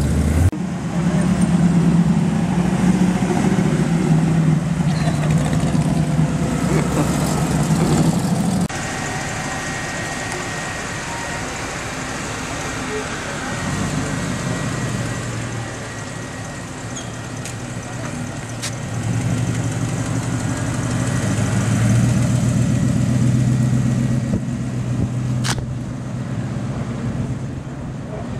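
Hot rod engine running while under way, heard from on board. After a sudden cut about nine seconds in, a stripped-down roadster hot rod's engine runs low and slow as it rolls across a car park, growing louder in the second half before easing off near the end.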